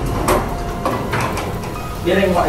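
Chairs being moved on a tiled floor: a plastic chair and a wheeled office chair scraping and knocking, with several irregular clatters.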